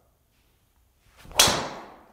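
A golf driver swishing through a short swing and striking a teed ball once with a sharp crack that rings and dies away over about half a second. The ball is struck flush in the centre of the clubface, which the golfer calls 'absolutely stung'.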